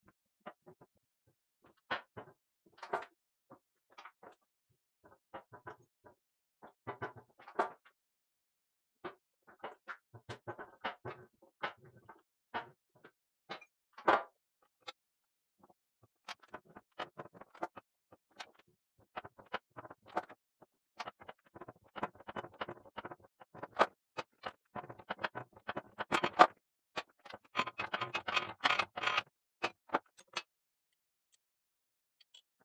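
Hand-lever arbor press forcing a half-inch square push broach through a drilled hole in hard 4140 pre-hard steel: irregular clicks, ticks and crackles as the broach teeth shear the steel, with a few sharper snaps. The clicks come much thicker and faster over the last few seconds.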